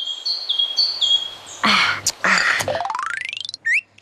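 Birds chirping in a quick run of short, high calls. About halfway through come two short noisy bursts, then a fast rising sweep of rapid clicks.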